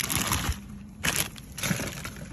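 Clear plastic bag crinkling and rustling as it is handled, in a few short, irregular bursts.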